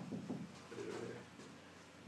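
A low, murmured voice, twice in the first second or so, quieter than the nearby speech.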